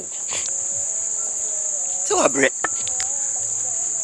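Crickets chirring in a steady, unbroken high-pitched drone.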